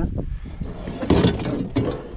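A kayak paddle being handled and laid against a plastic kayak, with scraping and a few knocks, loudest a little after a second in.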